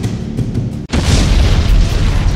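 Background music, then about a second in a loud explosion sound effect, a boom that fades out slowly.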